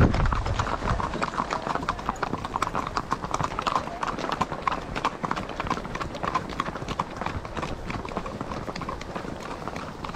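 Hooves of several ridden horses clip-clopping on an asphalt road, many hoofbeats overlapping in a quick, uneven patter.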